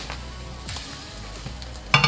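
Background music over the faint sizzle of an egg frying in a hot stainless honeycomb nonstick pan, with one sharp knock near the end.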